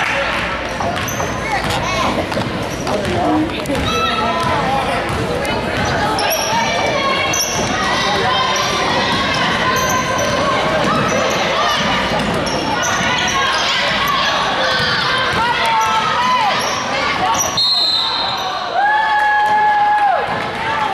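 A basketball bouncing on a hardwood court amid voices of players and spectators, echoing in a large gym. Near the end a steady tone sounds for about a second and a half, louder than the rest.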